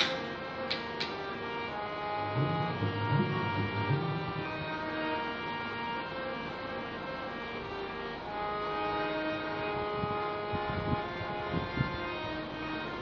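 Harmonium playing held, overlapping notes, with the melody moving every second or so. A few deep drum strokes come in, some with a short rising bend, about two seconds in and again near the end.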